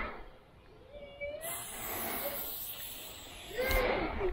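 Aerosol spray-paint can spraying: one steady hiss of about two seconds, starting about one and a half seconds in.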